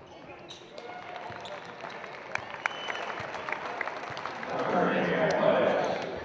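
Live game sound in a basketball gym: a ball bouncing and short squeaks over players' and spectators' voices, then cheering and applause swelling about four and a half seconds in.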